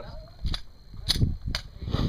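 Four sharp gunshot cracks, about half a second apart, at moderate level: gunfire on a shooting range, not fired by the shooter in view.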